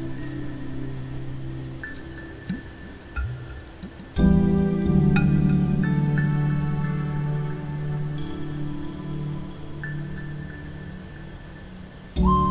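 Crickets chirring in a steady, high, even band under a background music score of held chords. The music swells louder about four seconds in and fades back gradually toward the end.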